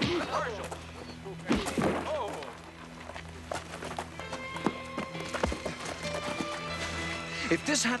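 Fight-scene soundtrack: men shouting and grunting over background music, with a few sharp thuds of blows and scuffling.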